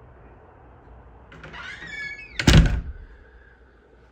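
A door squeaking briefly as it swings, then shutting with a loud thud about two and a half seconds in.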